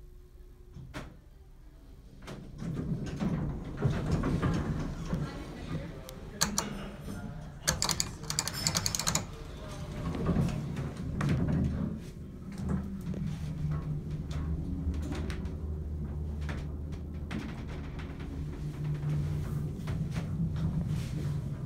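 1970s US Elevator hydraulic elevator: its doors slide open with a rumble a few seconds in, with scattered clicks and a quick run of clicks before the middle. A steady low hum of the elevator machinery follows for the second half.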